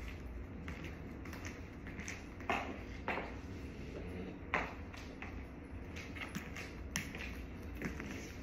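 Footsteps of heeled boots on a hard floor: irregular knocks and taps, a few of them louder, over a steady low room hum.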